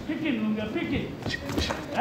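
A man's voice calling out over the arena's background noise, followed about a second and a half in by a few sharp knocks.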